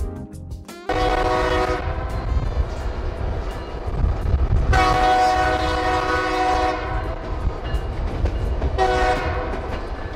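White Pass & Yukon Route train's horn sounding three times: a blast of about a second, a longer one of about two seconds, then a short one near the end. Under it runs the steady rumble and clatter of the passenger car rolling on the rails, heard from aboard the car.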